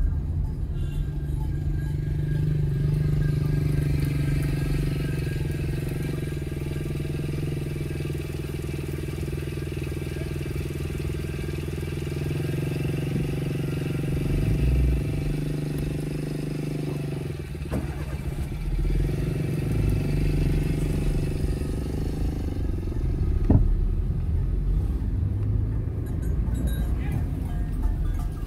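Motor vehicle engine running steadily at crawling speed, a low drone that eases for a moment part way through, with one sharp knock about three-quarters of the way in.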